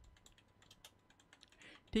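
Computer keyboard typing: a quick run of faint, irregular keystrokes as a short search phrase is typed.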